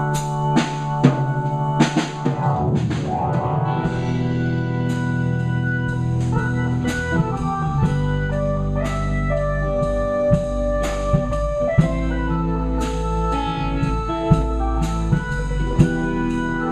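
Live rock band playing an instrumental passage: a drum kit strikes often over held organ-like keyboard chords and electric guitars, with a run of drum hits near the start.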